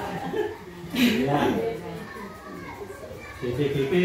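Indistinct chatter of several voices, with a louder voice about a second in.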